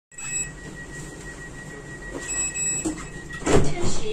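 Kaohsiung light-rail tram's sliding doors closing: a steady high warning tone with two short brighter beeps over it, then the door leaves shut with a loud thump about three and a half seconds in.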